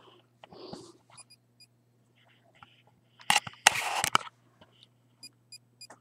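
Handling noise of rustling and scraping, loudest for about a second in the middle, over a steady low hum. There are also short high beeps: two early, and three in quick succession near the end.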